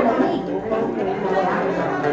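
Indistinct chatter of people talking in the room, with no lute notes standing out.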